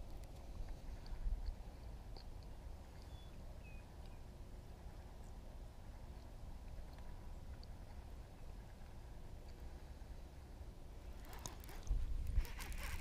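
Quiet open-air background: a steady low rumble with a few faint ticks and short high chirps, and one brief louder click about a second in.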